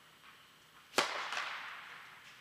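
A tennis racket strikes the ball on a serve, one sharp crack about a second in, followed by a fainter knock a third of a second later. The hit echoes and dies away in the reverberant indoor court hall.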